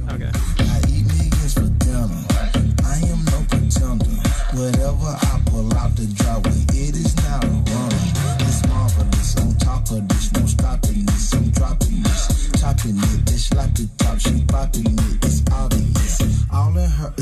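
A music track with a steady beat and deep bass, played loud through large Augspurger studio monitors and picked up by a phone's microphone.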